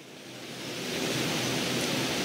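Audience applauding, growing steadily louder through the pause.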